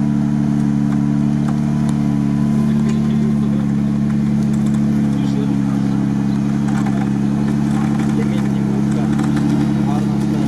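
An off-road 4x4's engine running at steady revs while a vehicle stuck in swamp mud is winched out on a steel cable: a continuous low drone that stays level throughout.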